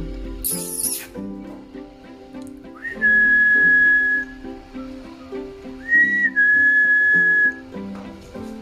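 A person whistles two long, level notes, the first about three seconds in and the second about six seconds in, each opening with a short slide up, over soft background music. A brief rustle comes near the start.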